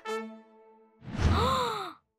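A cartoon character's breathy sigh about a second in, its pitch rising and then falling. It follows the fading tail of a short music cue at the start.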